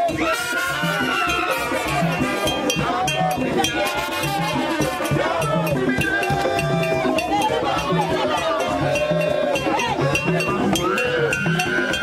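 Haitian Chanpwel band music played loud: a steady low drum beat about twice a second, with shakers and voices singing over it.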